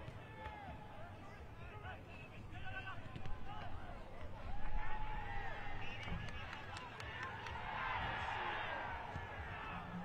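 Indistinct background chatter of several people's voices overlapping, with no single clear speaker.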